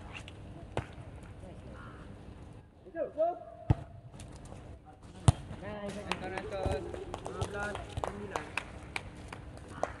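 A volleyball being hit and bouncing: scattered sharp slaps throughout, the loudest about five seconds in, with players shouting and talking.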